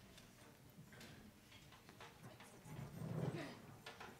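Quiet room noise of a seated band between pieces: scattered light clicks and knocks from people shifting and handling instruments and stands, with a brief low murmur about three seconds in.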